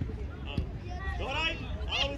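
Distant shouting voices from players and spectators at an outdoor youth football match, with one short knock about half a second in.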